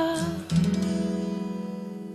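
End of a pop song: a woman's last sung note trails off, then about half a second in a final chord on acoustic guitar is strummed once and left to ring, slowly fading away.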